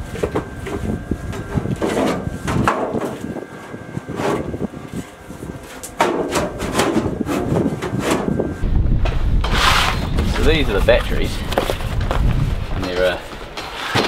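Aluminium sheet-metal battery box knocking and scraping against the aluminium hull tube as it is worked into the tube's opening, with a string of short metal knocks. A steady low rumble and muffled voices take over in the second half.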